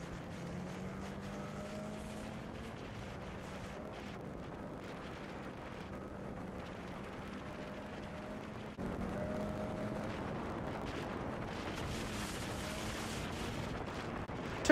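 Snowmobile running steadily at speed along a trail, its engine a steady drone under a hiss of wind noise. It gets a little louder about nine seconds in.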